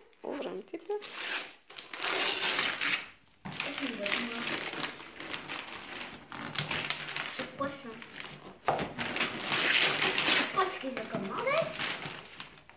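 Christmas wrapping paper being torn open and rustled by hand as a present is unwrapped, in two main spells of tearing, about a second in and again near nine seconds, with voices talking between and under them.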